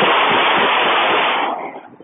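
Loud, steady rushing noise from clothing or wind on a body-worn camera's microphone while the wearer moves. It fades out about a second and a half in.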